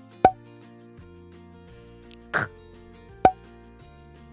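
Two short plop sound effects about three seconds apart, each marking a new flashcard, over soft children's background music. Between them a woman briefly voices the letter sound /k/.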